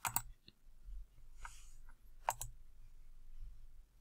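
Computer mouse button clicks, a few short sharp ones: one at the start, one about half a second in, and two in quick succession a little past two seconds.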